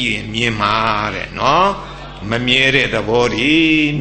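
An elderly monk's voice reciting in a chanting, drawn-out intonation, typical of Pali scripture recitation within a Buddhist sermon.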